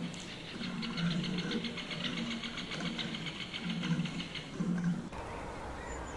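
A flock of Eurasian tree sparrows chirping: a fast, even run of high chirps over louder, low, repeated pulses of sound. It cuts off abruptly about five seconds in.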